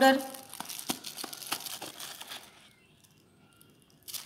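Crinkling and light tapping of a cardboard spice box as garam masala powder is shaken out over flour: a string of short crackles for about two seconds, stopping well before the end.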